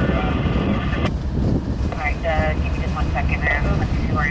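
Freight train's cars rolling past, a steady rumble of wheels on the rails.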